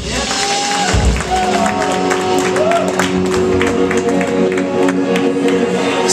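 Electric band instruments sounding loosely between songs: held guitar notes ringing with a few short bent notes, a low drum thump about a second in, and light ticking taps throughout.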